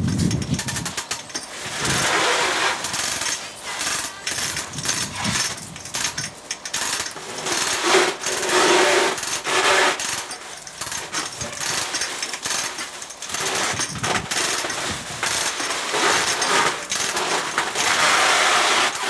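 Rapid metallic clicking and clattering of hand tools and fittings during work in a car's engine bay, coming in irregular busy bursts.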